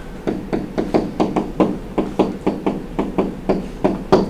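A rapid run of light taps from a stylus or pen striking a tablet writing surface while drawing and handwriting, about five taps a second.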